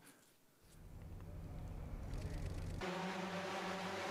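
Rotors of a drone-powered flying dress, heard from a played-back web video. Out of near silence a low rumble builds, then settles about three seconds in into a steady, many-pitched motor hum.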